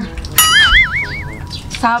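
A high, warbling whistle-like tone that starts abruptly and wavers up and down about four times a second for about a second, over a low steady background noise.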